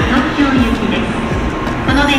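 Railway platform sound beside a stopped Shinkansen bullet train, mixed with background music with a melody.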